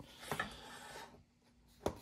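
Faint rubbing and handling of the vacuum pump's red plastic handle-and-motor cover on the metal pump, with one sharp knock near the end as the cover is brought back onto the motor.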